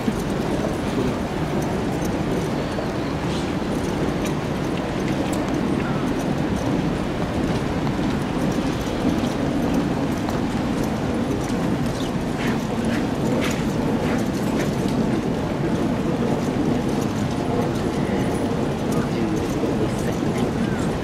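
Steady hubbub of a large crowd of spectators, many voices blending into one continuous murmur. A few faint clicks come about twelve to fourteen seconds in.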